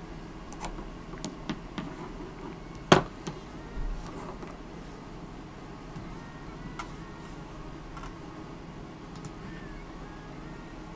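Scattered small clicks and taps of objects handled on a desk, with one sharp knock about three seconds in, over a steady low background hum.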